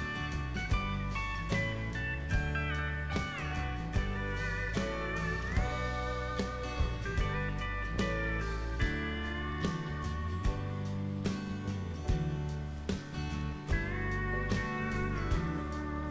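Background music: a plucked melody with sliding notes over a steady bass line.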